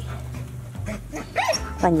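A Nigerian Dwarf goat kid gives one short, high-pitched bleat about a second and a half in, over a low steady rumble.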